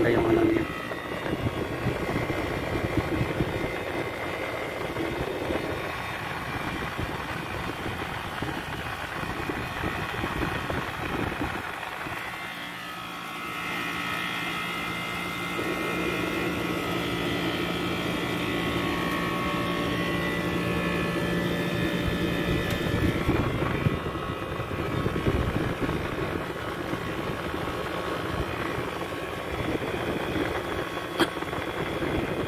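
Window-type air conditioner running, its fan and compressor giving a steady whirring hum with several steady tones, on test with a newly fitted thermostat. The sound dips briefly about twelve seconds in, then carries on steadily.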